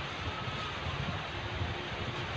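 Steady background hiss and low rumble, with no distinct event standing out.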